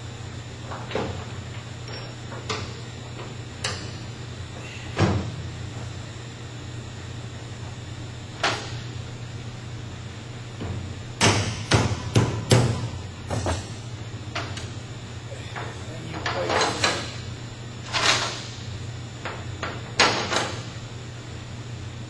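Scattered metallic clinks and knocks of a washer, nut and hand tools being worked onto the threaded belt-tensioning rod of a steel shot-blast machine's elevator head, with a quick cluster of knocks about halfway through.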